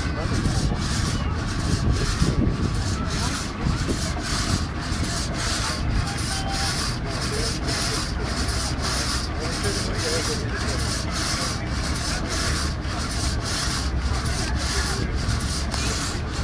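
Steam-driven vertical frame saw cutting through a log, its blades rasping in a steady rhythm of about two strokes a second.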